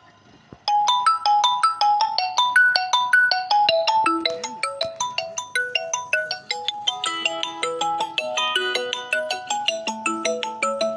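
A bright marimba-like melody of quick, ringing notes, in the manner of a phone ringtone, starting suddenly and loudly about a second in and carrying on without a break.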